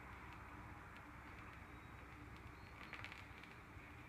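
Near silence: a faint steady outdoor background with a few faint ticks, a small cluster of them about three seconds in.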